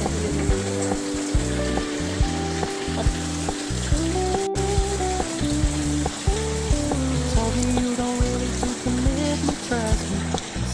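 Pop song with a held, stepping melody and a pulsing bass, over a steady hiss from a hair flat iron being pressed and drawn through damp, freshly treated hair.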